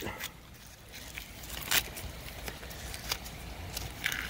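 Dry lower leaves being peeled and torn off the base of a pineapple slip: a few scattered crackles and snaps, the sharpest a little before the middle, over a faint rustle.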